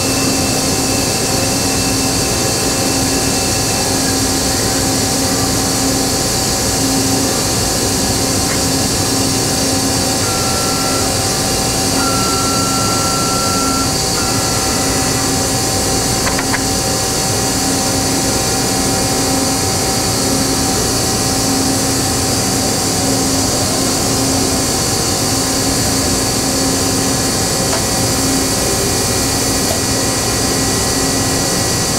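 Steady, loud hum and air rush of industrial machinery running under power, with a low tone that wavers on and off. A brief thin high whine comes in short pieces about ten to fifteen seconds in.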